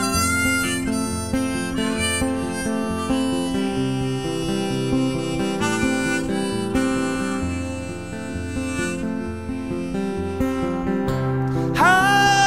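Live acoustic blues: acoustic guitar picking a repeating bass line under sustained harmonica notes, an instrumental passage.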